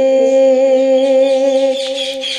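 Unaccompanied naat vocal: one long, steady held note, easing off slightly near the end.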